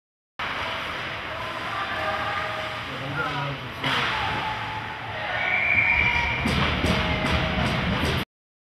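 Ice hockey game in an indoor rink: voices and skating noise, a sharp crack of stick or puck just before halfway, then a louder crowd reaction with a brief high tone and a few sharp knocks as a goal is scored.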